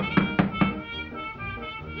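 Brass-band cartoon score with trumpets and drums, with three quick sharp knocks on a door in the first second.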